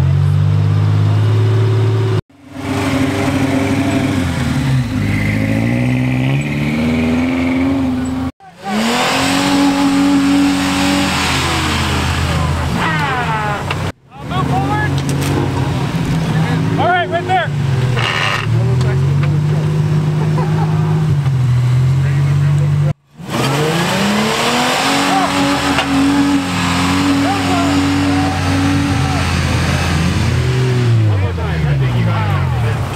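Lifted Toyota 4x4 engines revving up and down under load as the trucks crawl through soft sand, the pitch climbing and falling again and again. The sound breaks off abruptly four times between clips.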